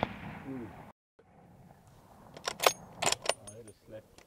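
The echo of a hunting rifle shot dies away over the hills. About two and a half seconds in comes a quick series of sharp metallic clicks and clatter: the rifle's bolt being worked to chamber another round for a follow-up shot.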